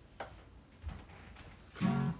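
A couple of light knocks as an old Yamaha acoustic guitar is handled, then a chord strummed near the end. The guitar is out of tune.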